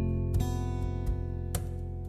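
Music led by strummed acoustic guitar: full chords struck twice, each left to ring.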